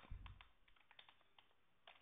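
Faint computer keyboard keystrokes: a quick run of clicks in the first half second, then a few scattered ones.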